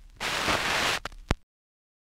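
A burst of hissing, static-like noise lasting under a second, followed by two sharp clicks, the second louder. Then the recording cuts off to dead silence about a second and a half in.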